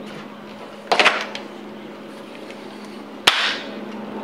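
Wooden buttstock being pushed onto a Winchester 1895 rifle's steel receiver, wood and metal knocking together: a short clatter of clicks about a second in, then a single sharp knock near the end.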